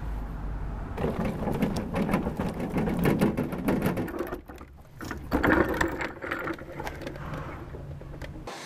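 Rattling and clattering of a wheeled metal cart rolling over paving stones, in two spells with a short break near the middle.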